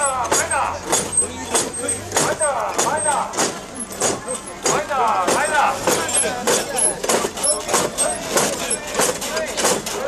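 Mikoshi bearers shouting a chant while the metal rings on the portable shrine's poles clank in time, about twice a second.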